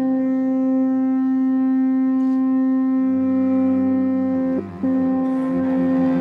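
Amplified electric toothbrush running in an open mouth, giving a loud, steady buzzing drone with many overtones. The tone dips and wavers briefly about three quarters of the way in, then carries on.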